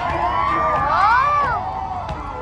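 A crowd cheering and shouting, with several voices rising and falling in whoops that overlap and are loudest about a second in.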